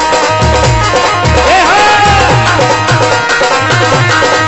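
Indian folk dance music with a steady, driving drum beat under a melody line that glides up and holds near the middle.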